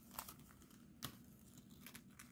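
Faint crinkling and a few soft crackles as a sheet of stamped cross-stitch fabric is handled and shifted in the hands, the clearest crackle about a second in.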